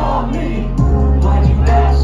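Live music played loud over a club PA: singing over a beat, with a deep bass coming in just under a second in.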